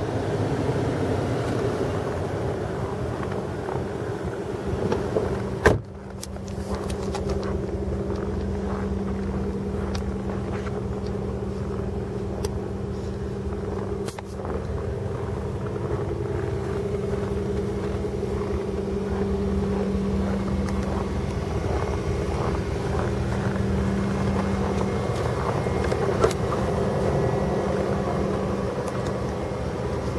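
A 2010 Dodge Journey's engine idling steadily with a low hum. About six seconds in there is one sharp thump of a car door shutting.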